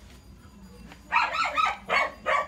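A dog barking rapidly and repeatedly, starting about a second in, about three barks a second.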